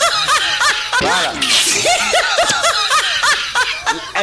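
A person laughing loudly in quick, high-pitched "ha-ha" pulses, two runs of laughter with a short break about a second in.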